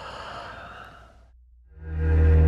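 A long breathy sigh over a low steady drone, then about 1.7 s in a loud, deep sustained music chord swells in: a dark trailer soundtrack.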